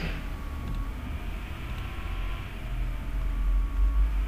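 Steady low rumble with a faint hum, the background noise of the recording's microphone, with no clear event standing out.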